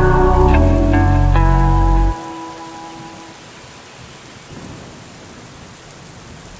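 A lofi hip-hop track with bass and keys ends sharply about two seconds in. After it, the steady hiss of rain carries on alone at a much lower level.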